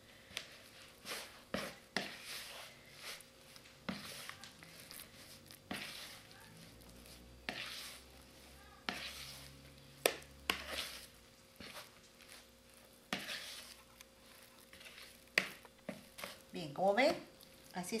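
Wet, sticky bread dough being mixed and worked by hand in a bowl: irregular squelches and soft smacks, with scattered short knocks against the bowl.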